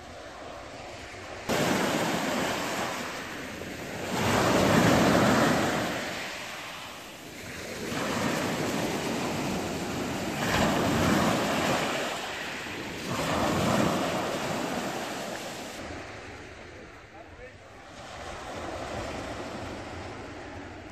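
Small sea waves breaking and washing up a fine-shingle beach, cutting in suddenly and then swelling and falling back in about four surges, with wind buffeting the microphone. Near the end it drops back to a quieter, steady wind hiss.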